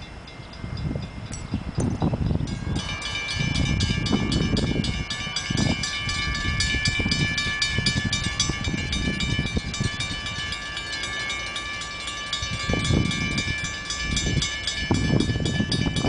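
Railroad grade-crossing warning bell that starts abruptly about three seconds in and then rings steadily with rapid, even strikes, the warning for the approaching train. Gusts of wind buffet the microphone underneath.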